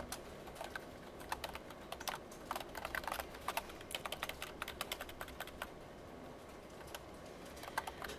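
Typing on a computer keyboard: quick runs of keystrokes, thinning to a lull in the last second or two.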